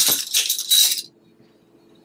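Small items handled on a tabletop: a brief clatter of light clicks and rustling lasting about a second.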